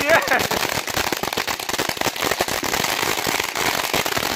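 Ground firework crackling on the pavement: a dense, rapid, unbroken string of small pops.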